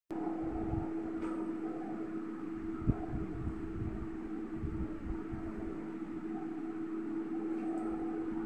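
A steady, even hum with a low rumble beneath it, and one short knock about three seconds in.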